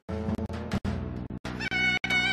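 Instrumental Turkish folk music, with a high, wavering woodwind melody, clarinet-like, coming in near the end.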